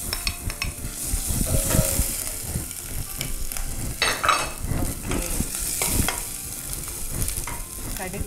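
Chopped ginger and garlic frying with sliced onions and curry leaves in oil in a stainless steel pot, sizzling steadily. A wooden spatula stirs and scrapes against the pot, making repeated irregular knocks.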